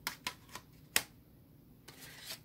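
Plastic CD jewel cases clicking and clacking as they are handled: a quick run of sharp clicks in the first second, the loudest about a second in.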